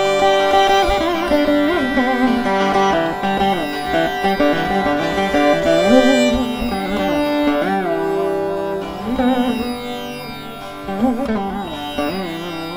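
Carnatic instrumental passage: violin and veena playing an ornamented melody full of sliding, oscillating notes over a steady drone.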